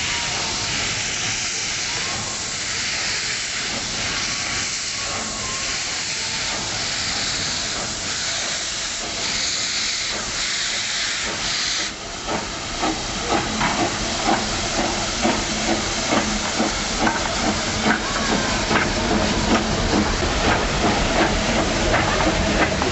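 Walt Disney World Railroad's 4-6-0 steam locomotive No. 3, hissing steadily as steam vents around its cylinders. About twelve seconds in, the hiss drops abruptly and gives way to rhythmic exhaust chuffs, about two a second, as the locomotive pulls away.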